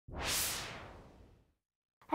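A single whoosh sound effect for a logo intro, swelling quickly and fading out about a second in.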